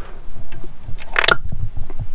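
An old brake caliper slider pin is pulled out of its bore in a Mini Cooper S front caliper carrier, with one short scraping pop about a second in as it comes free of its rubber boot.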